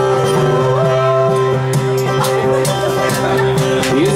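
A folk band playing an instrumental passage live: strummed acoustic guitar, fiddle and bass, with sustained held notes. A washboard scrapes a steady rhythm from about halfway through.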